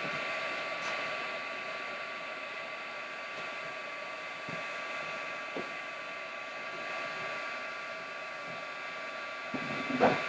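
Handheld craft heat gun running steadily, its fan blowing hot air with a constant whirring whine, heating embossing powder on paper to melt it. A few faint knocks sound partway through, and a louder one at the very end.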